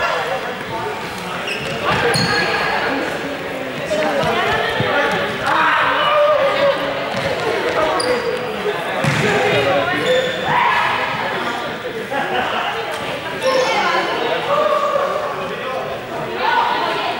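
Young players' voices calling and chattering, echoing in a large sports hall, with short high sneaker squeaks on the court floor now and then as they run and dodge.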